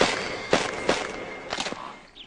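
Heavy footsteps, about two a second, growing fainter as the walker moves away.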